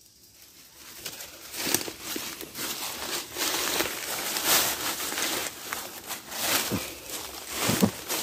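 Footsteps and brushing through dry leaf litter and grass, an irregular crunching and rustling that starts about a second in.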